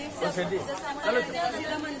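Several people talking over one another, with stall vendors calling out to passers-by.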